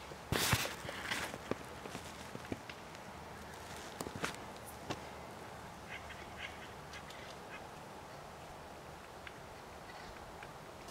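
Acorn woodpeckers calling with harsh, raucous calls, the loudest about half a second in and fainter ones around six seconds, with scattered sharp taps of the birds pecking at acorns in between.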